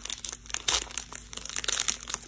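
Foil wrapper of a Pokémon TCG booster pack crinkling and tearing as it is peeled open by hand, in irregular crackles.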